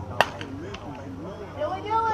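Softball bat striking a pitched ball: one sharp crack about a fifth of a second in, followed by a couple of fainter knocks. Near the end a voice shouts over background chatter.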